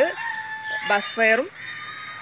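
A rooster crowing: one long, steady held note that ends a little before a second in.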